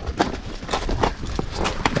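Hooves of Holstein cows on packed snow as the cows hurry past through a gateway: a quick, irregular run of steps and knocks.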